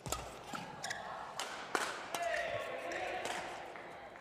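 Badminton doubles rally: sharp strikes of rackets on the shuttlecock and shoes on the court floor in a large hall, followed about two seconds in by a drawn-out shout from a player.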